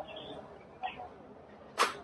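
A baseball bat striking a pitched ball: one sharp crack near the end, with faint voices before it.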